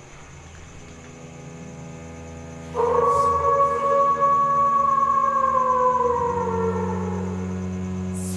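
Film score: a low drone, then a loud held tone that comes in suddenly about three seconds in, holds, and slowly slides down in pitch, over a steady low drone.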